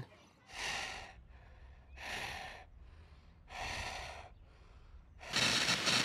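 A person breathing heavily through the mouth: three slow, heavy breaths about a second and a half apart, each followed by a fainter one. About five seconds in, a burst of TV static hiss cuts in.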